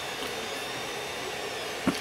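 Creality 3D printer running mid-print: a steady fan whir with faint thin high tones over it.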